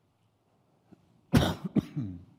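A man coughs twice in quick succession into his fist, a louder, longer cough and then a shorter one, about a second and a half in.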